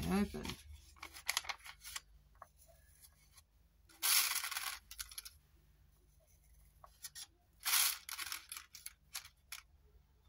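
A vellum paper pouch being handled and folded: two short crackly rustles, about four and eight seconds in, with scattered light clicks and ticks in between.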